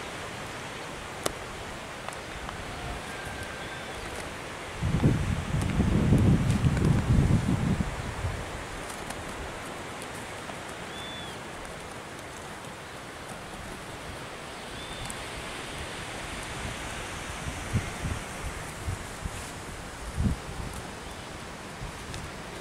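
Outdoor wind noise and rustle on the microphone, with a louder gust buffeting it about five seconds in for roughly three seconds, and a few faint short high chirps.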